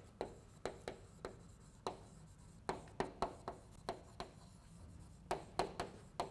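Chalk writing on a blackboard: a run of short, sharp, irregular taps, a few a second, as each letter is stroked onto the board.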